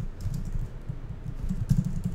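Typing on a computer keyboard: a quick, uneven run of key presses.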